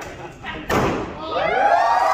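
A handheld confetti cannon goes off with a single sharp bang about three-quarters of a second in, followed by many voices of a crowd shouting and cheering.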